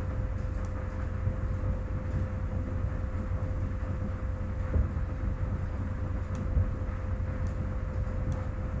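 Steady low rumble of background noise with a constant faint hum running through it, and a couple of faint clicks near the end.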